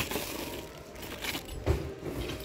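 Plastic-bagged metal kitchen utensils rustling and clinking as a hand picks through them in a bin, with a few short clicks.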